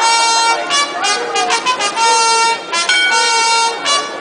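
A brass instrument, trumpet-like, playing a slow melody of held notes about half a second to a second each, with short slides between them.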